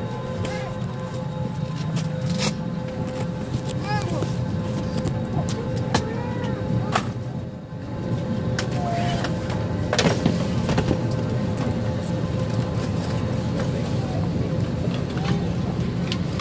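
Airliner cabin ambience during boarding: a steady hum from the cabin air conditioning, with murmured passenger voices and scattered clicks and knocks, the sharpest about ten seconds in.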